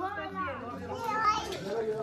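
Several adults and children talking and calling at once, their voices overlapping.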